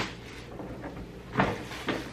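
Handling noise as gifts are set down and picked up: a soft knock about a second and a half in, followed by a smaller one.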